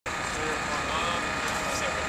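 An engine running steadily, with people's voices faintly underneath.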